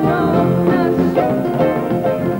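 A young girl singing a song into a microphone, with keyboard accompaniment.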